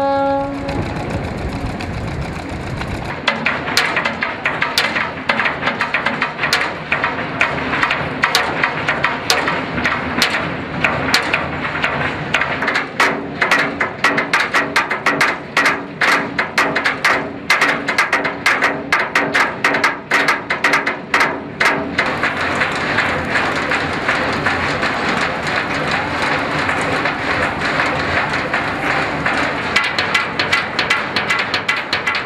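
Many hand hammers striking a ship's steel hull, chipping off rust, in a dense, irregular clatter of sharp metallic strikes that starts about three seconds in. Before that, a held horn note cuts off just after the start and is followed by a low rumble.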